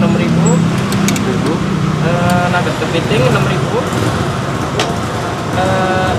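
Roadside traffic with a vehicle engine running close by, a steady low hum that fades out about two and a half seconds in. Voices talk over it.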